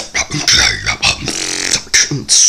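Beatboxing: a run of short, throaty vocal-bass growls and grunts, broken by hissy snare-like bursts.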